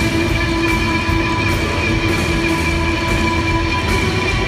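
Live rock band playing, with a few sustained notes held steadily over bass and drums.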